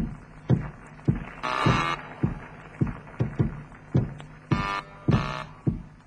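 Footsteps of people walking, a steady run of sharp steps about two or three a second, with a few longer scuffing crunches, as a radio-drama sound effect over a low hum.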